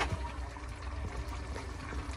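Lobster tails simmering in tomato sofrito in a pot on the stove: a faint, steady bubbling and sizzling of the sauce over a low hum.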